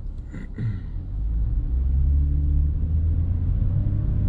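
Car engine and road noise heard from inside the cabin with the windows up, a low steady drone that builds from about a second in as the car pulls away from a standstill and gathers speed.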